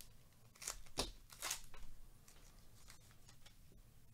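A baseball card pack wrapper being torn open: a few short crinkling rips in the first two seconds, then faint handling of the cards.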